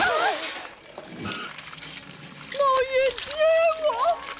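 A soft wet splat as something lands in a frosted cake, then voices crying out in dismay, ending in one long drawn-out cry.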